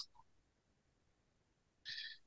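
Near silence: room tone over a call line, with a faint short hiss near the end.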